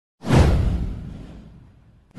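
A whoosh sound effect with a deep boom underneath. It starts suddenly a moment in and fades away over about a second and a half.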